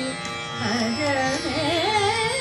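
A woman singing a Hindustani classical vocal line over the steady drone of a tanpura. Her voice drops out briefly at the start, comes back about half a second in with quick wavering ornaments, and glides higher near the end.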